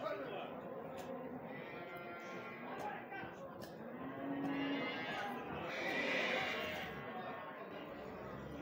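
Men's voices talking around a ridden horse, with a horse neighing loudly for about a second and a half near the six-second mark.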